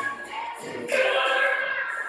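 A girl singing solo, holding long sung notes, with a short dip about halfway through before a strong sustained note.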